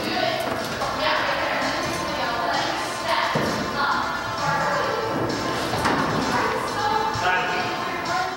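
Thuds of a climber moving on an indoor climbing wall, with voices and background music echoing in a large hall.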